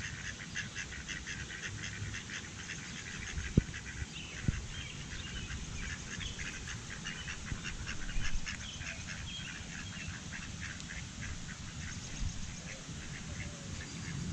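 Mallard ducks quacking while feeding, a steady run of short, quiet calls. Two sharp clicks come about three and a half and four and a half seconds in.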